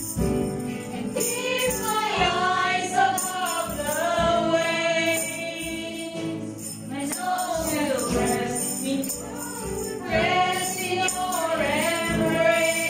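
A Christian worship song sung by a small group of singers over accompaniment, with the metal jingles of hand tambourines shaken by dancers.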